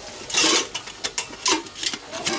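Stainless-steel bee smoker being handled: its lid pushed shut with a short metal-on-metal scrape, followed by a few light clicks.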